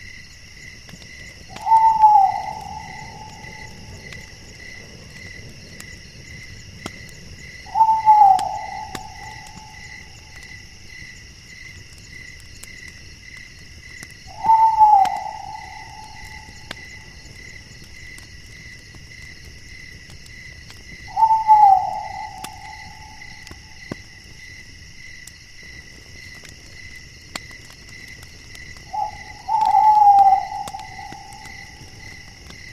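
An owl calling, a single short falling note repeated five times, about every six to seven seconds, over a steady chorus of night insects.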